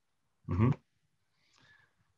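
A man's brief low "mm-hmm" of acknowledgement about half a second in, then near silence with a faint short noise just before the end.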